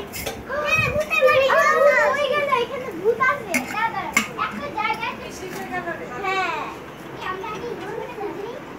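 Several young children talking and calling out over one another as they play, their high voices overlapping, with a couple of sharp clicks about midway.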